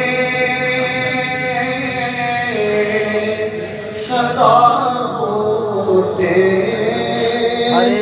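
A man singing a devotional kalam unaccompanied into a microphone. He holds a long, slowly wavering line for about four seconds, then starts a new ornamented phrase on "aarey".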